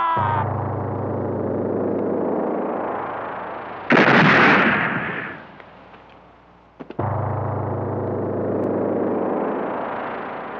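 Film action-scene gunfire over a steady low synthesizer drone: one loud gunshot blast about four seconds in that rings out for more than a second, then two quick sharp cracks just before the seven-second mark, after which the drone resumes. A siren's falling note cuts off right at the start.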